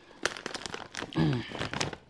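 Crinkling and crackling of a foil-lined chip bag being handled, in scattered small clicks, with a short falling hum of voice about a second in.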